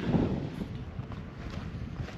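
Wind rumbling on the camera microphone.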